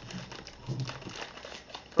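Plastic mailer bag crinkling and rustling as it is pulled and worked open by hand.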